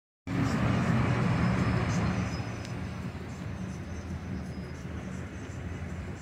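Road traffic: a car passing close with a low engine hum and tyre noise in the first two seconds, then fading to a quieter, steady hum of traffic.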